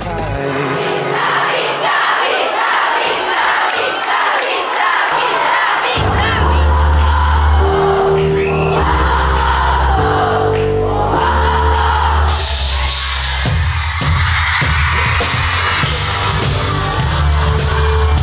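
A concert crowd of fans screaming and singing along. About six seconds in, loud live pop music with a heavy bass comes in and carries on, growing fuller near the middle.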